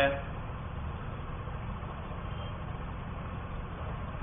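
A steady low hum with a faint hiss of background noise, holding at an even level throughout.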